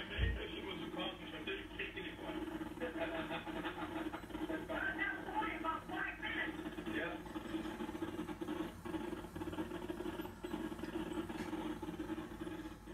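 Television broadcast audio recorded off the set's speaker: indistinct voices over a steady low hum, with a brief low thump just after the start.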